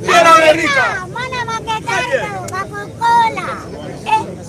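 Speech only: a man's loud, raised voice declaiming to a crowd, loudest in the first second, with crowd chatter behind.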